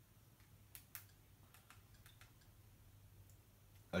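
Several faint clicks of a handheld TV remote's buttons being pressed to scroll a menu, two close together about a second in and a few more scattered after, over a low steady room hum.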